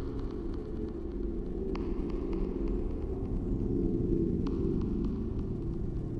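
Low, steady hum-buzz drone, a fluorescent-light ambience sound effect, with scattered static clicks and crackles over it.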